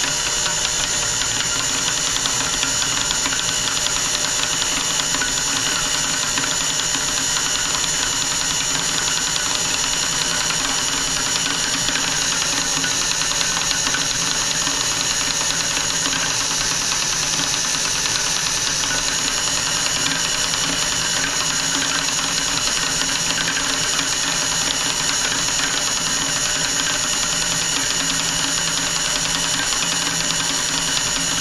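Electric drill spinning a stirring rod in a full glass carboy of wine, running steadily with a high whine, to mix in the freshly added F-packs.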